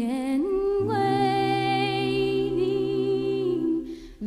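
Unaccompanied bluegrass gospel vocal harmony: several voices hold a long chord, and a low bass voice comes in under it about a second in. The phrase breaks off just before the end.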